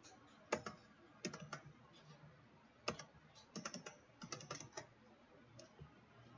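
Computer keyboard typing: scattered keystrokes, with a quick run of them about two thirds of the way through.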